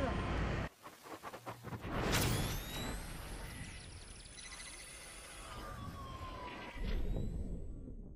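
Electronic sound-effect sting for a logo bumper: a few crackling clicks, then a sudden whoosh-like hit about two seconds in, followed by many sliding tones rising and falling that slowly fade out near the end.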